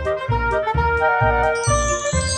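Upbeat children's background music with a steady bass beat about twice a second; a bright twinkling chime comes in near the end.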